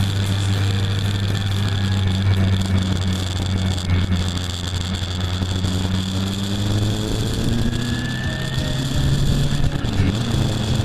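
Yamaha FJR1300's inline-four engine running at steady revs under a constant hiss of wind and road noise. About seven seconds in, it rises in pitch as the bike accelerates.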